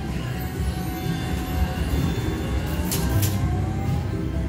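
Fu Dai Lian Lian slot machine playing its win music as a 1046-credit bonus win is counted into the credit meter, with a tone rising slowly over the second half, over the low hum of a casino floor.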